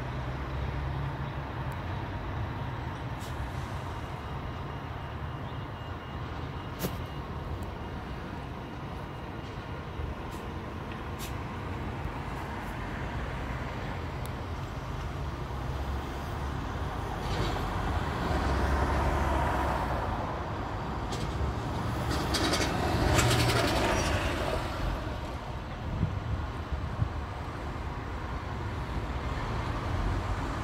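Steady city street traffic rumble. Two louder vehicles pass in the second half, the second one the loudest.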